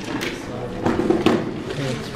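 Indistinct voices of people talking in a large, echoing hall, with a few light knocks.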